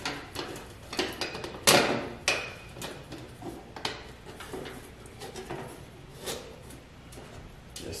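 Thin galvanized sheet-metal duct pieces clanking, clicking and scraping as they are pushed and worked together by hand. The knocks come irregularly and are loudest in the first couple of seconds, then lighter and sparser.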